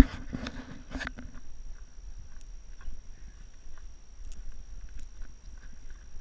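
Wind rumbling on the microphone of a handheld action camera, with a cluster of knocks and scuffs in the first second or so and a few faint clicks after. A faint steady high whine runs under it all.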